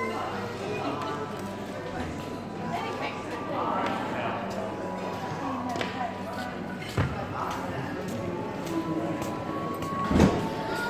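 Background voices talking and music playing in a large hall, with a single sharp knock about seven seconds in.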